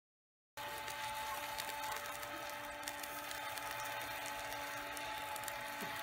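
A rotisserie barbecue's spit motor humming steadily, with meat sizzling and crackling over charcoal as a steady hiss beneath it.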